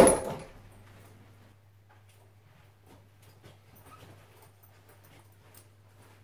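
A door shutting with a single sharp bang at the start that rings briefly, then faint footsteps and small movement sounds over a steady low electrical hum.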